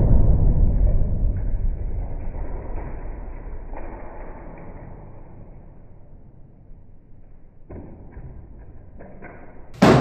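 A deep boom that dies away slowly over about seven seconds. A few faint knocks follow, then a sharp hit near the end.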